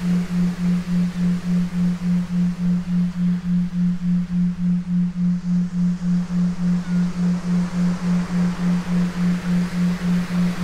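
A low steady tone pulsing evenly about four times a second, the backing tone of a hypnosis recording, over a faint wash of noise.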